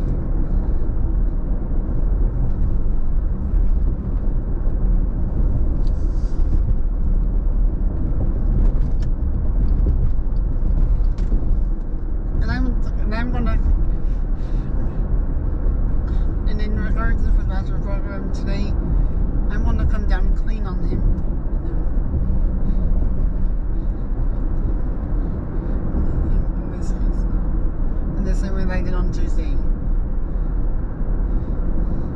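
Steady low rumble of road and engine noise heard inside a moving car's cabin. A voice comes in briefly a few times, around the middle and near the end.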